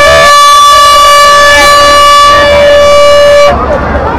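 A horn blown in one long, loud, steady note that cuts off suddenly about three and a half seconds in, followed by crowd chatter.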